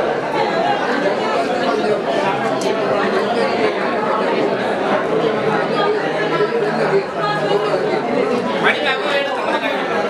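Many people talking at once: the steady chatter of a seated crowd of guests, with no single voice standing out.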